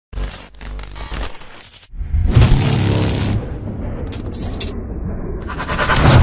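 Sound effects for an animated logo intro: about two seconds of choppy glitch clicks and short electronic blips, a brief cut-out, then a heavy booming hit with a long fading noisy tail. A second hit lands near the end.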